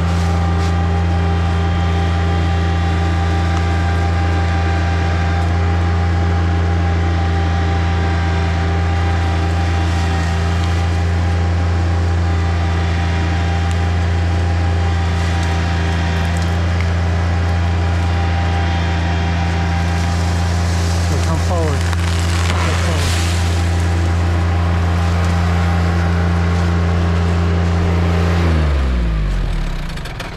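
John Deere 2320 compact tractor's three-cylinder diesel engine running at steady high revs while it pulls a tree over on a strap. There is a brief crackle of wood about two-thirds of the way in, and near the end the engine revs fall away.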